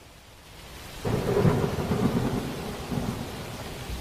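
Thunder rumbling over rain. It comes in about a second in, is loudest soon after, and slowly dies away.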